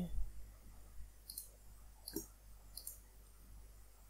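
Three computer mouse clicks, about a second apart, over a steady low hum.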